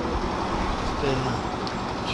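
Steady mechanical rumble, with brief snatches of distant talk.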